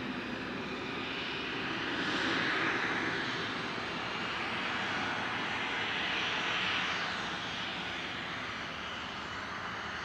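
Twin Williams FJ44-3A turbofans of a Cessna Citation CJ3 business jet at taxi power: a steady jet hiss and whine that swells twice and eases slightly near the end.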